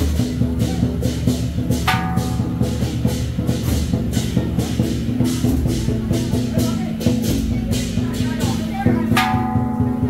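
Temple procession music: a fast, steady beat of percussion hits over a held pitched tone, with a higher held note entering about two seconds in and again near the end, amid crowd voices.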